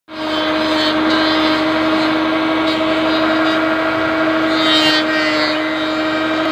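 A steady machine hum holding one constant pitch throughout, over a rougher noisy background.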